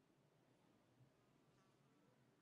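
Near silence: faint room tone with a low hum and one tiny tick about a second in.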